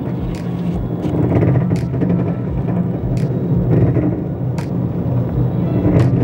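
Fireworks going off: several sharp bangs, roughly a second and a half apart, over a continuous low rumble, with music running underneath.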